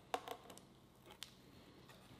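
A few faint, sharp clicks and taps over quiet room tone, mostly in the first half and one a little after a second in.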